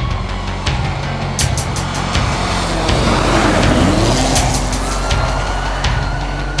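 Rally car driving past at speed on a snowy road, its engine note rising and falling and the rush of tyres and snow loudest around the middle, over music with a pounding beat.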